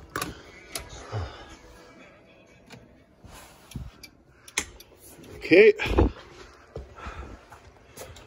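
Peterbilt 359 cab door latch clicking open, then scattered clicks and knocks of someone climbing into the cab and working the dash switches. A heavy low thump comes about six seconds in.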